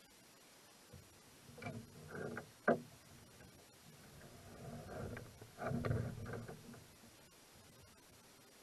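Handling sounds of a spinning rod and reel in a canoe: rustling, knocks and clicks as the line is rigged and a cast is made. There is a sharp click a little under three seconds in, and a louder stretch of knocking and rustling around the middle of the cast.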